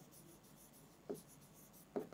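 Faint scratching of a pen writing a word stroke by stroke on a board, with one soft knock about halfway through.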